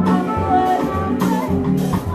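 Small jazz band playing live, a run of bass notes moving every half second or so under melody lines and cymbal strokes.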